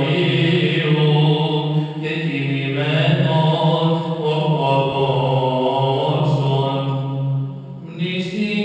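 Byzantine (Greek Orthodox) liturgical chant by male voice: a slow melody with long held notes over a steady low drone, pausing briefly near the end.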